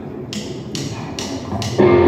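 A drummer's count-in: four short, sharp ticks from the drum kit, evenly spaced about half a second apart, over a low amplifier hum. The full rock band (electric guitars, bass guitar and drums) then comes in loudly near the end.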